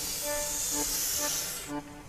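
A steady high hiss over light background music, cutting off abruptly near the end.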